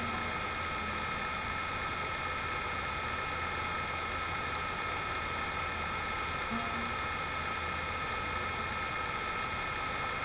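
Steady hum and hiss with a thin high whine, unchanging throughout; no guitar strums or singing are heard.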